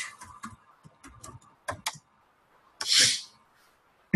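Computer keyboard typing: a quick run of key clicks for about the first two seconds as a word is typed. A short hiss follows near three seconds in.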